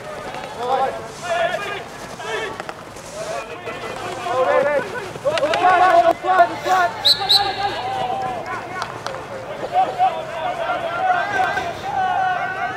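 Players' shouts and calls carrying across a field hockey pitch during play, with two sharp clacks in quick succession about seven seconds in.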